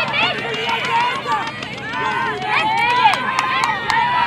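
Many high-pitched voices shouting and cheering over one another from the sideline and field during an ultimate frisbee point. A few short sharp clicks come near the end.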